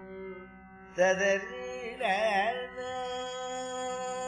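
Carnatic music in raga Simhendramadhyamam over a steady tambura drone: about a second in, a melodic line enters with oscillating gamakas, a second ornamented phrase follows, and it then settles on a long held note.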